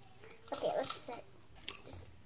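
A brief, faint voice about half a second in, followed by a light click near the end.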